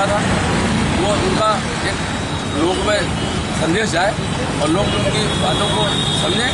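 Indistinct voices talking over a steady background rumble, with a thin high steady tone coming in near the end.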